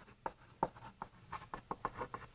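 Chalk writing on a blackboard: a quiet run of short, irregular taps and scratches, coming faster in the second half as a word is written out.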